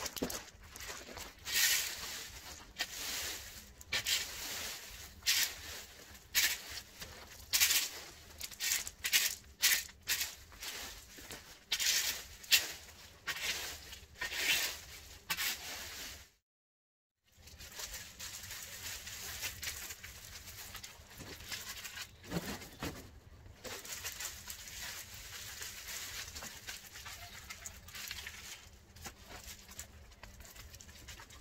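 Dry dead yucca leaves being scraped up and gathered off grass and gravel: a string of loud, irregular rustling and scraping strokes, about one a second. After a short break about halfway through, a quieter, steady crackling rustle follows.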